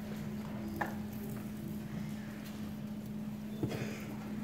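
Quiet hall room tone with a steady low hum and a couple of small knocks or shuffles, one about a second in and one near the end; the band is not yet playing.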